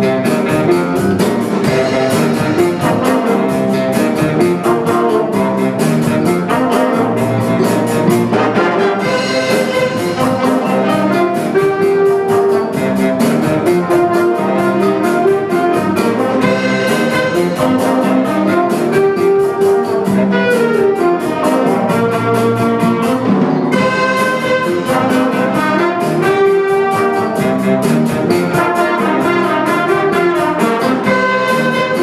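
A school jazz big band playing a contemporary swing chart: saxophones and trombones over a rhythm section, with the drummer's cymbals keeping an even beat and the trumpets coming in near the end.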